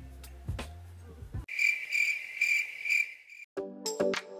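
Background music stops about a third of the way in and gives way to a cricket chirping in an even pulse, about two chirps a second. The chirping cuts off suddenly near the end as new synth music begins.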